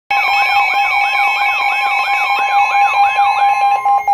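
Several NOAA weather alert radios sounding their alarms together for a tornado warning. Steady alert tones run under a repeating rising-and-falling siren sweep, about three sweeps a second. The sweep stops shortly before the end, leaving one steady tone.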